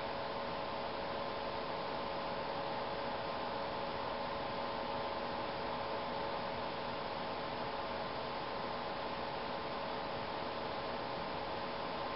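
Steady background hiss with a faint even hum, unchanging throughout; no brush or other sound stands out.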